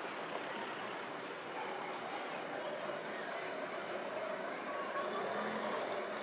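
Street ambience with a motor vehicle engine running on the road nearby, its sound growing a little louder in the second half.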